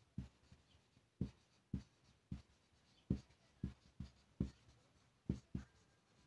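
Marker pen writing words on a white sheet: an uneven run of short scratchy strokes, about two a second, as each letter is drawn.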